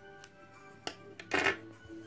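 Small scissors snipping thread close to a needle-lace motif: a light click, then a short, louder snip about a second and a half in, over soft background music.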